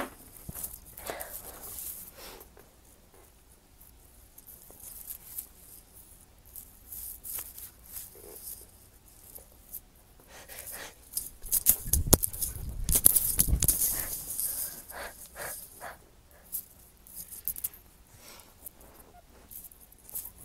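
Rustling and scraping handling noise close to the microphone, with scattered small clicks and a louder stretch of rustle and rumble about twelve to fourteen seconds in.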